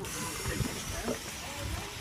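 Steady hiss of compressed air from a diver's scuba supply blowing into a yellow lift bag at the water's surface, inflating it to raise a heavy load.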